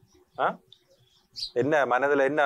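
Conversational speech in Tamil: a short spoken word about half a second in, a pause, then talking starting again about a second and a half in. A brief high chirp sounds in the pause.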